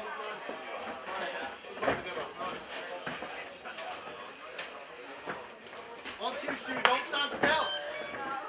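Indistinct voices of spectators and cornermen shouting around an MMA cage, broken by a few sharp thuds, the loudest near the end.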